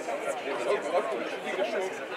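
Indistinct chatter of several voices talking at once: spectators talking among themselves.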